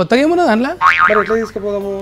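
A man talking, with a comic "boing" sound effect about a second in, a springy tone that rises in pitch, followed by a short held tone.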